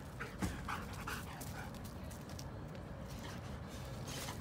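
Dogs at a wire fence, one making several short, high-pitched sounds in the first second and a half, then quieter.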